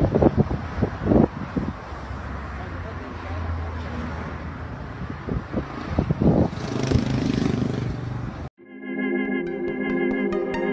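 Road and wind noise in a moving vehicle, with a low hum and brief voices. About eight and a half seconds in it cuts off suddenly and electronic music with sustained organ-like chords begins.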